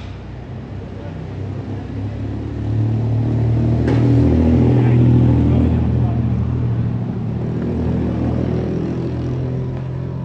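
A motor vehicle's engine running with a steady low hum, growing louder about three seconds in and slowly easing off.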